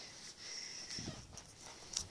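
Faint noises from a pet at close range, with a few light clicks and a sharper click near the end.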